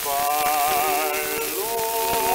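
1920 Columbia 78 rpm shellac record playing a tenor duet with orchestra accompaniment: held notes with a wide vibrato, moving to new pitches about one and a half seconds in. Steady surface hiss and light crackle from the disc underlie the music.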